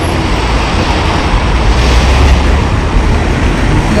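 Steady road traffic noise from vehicles crossing the bridge, a low rumble that swells about two seconds in.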